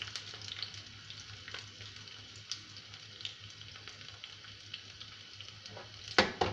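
Chopped ingredients frying in a small pan on a gas stove: a steady sizzle with scattered small crackles and pops, and a spoon stirring briefly at the start.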